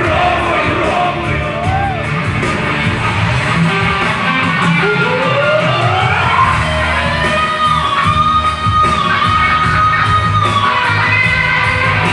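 Live rock-chanson band playing an instrumental passage with an electric guitar lead. About five seconds in, the lead slides upward into a long held note with small bends, over the full band.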